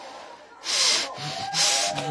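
Two short bursts of hissing, rustling noise, the first a little after half a second in and the second near the end, each under half a second long.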